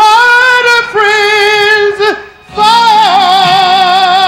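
A male singer's voice holding long, high sung notes with vibrato, live through a PA. After a short breath a little past two seconds, he sustains one long final note over the band's held chord.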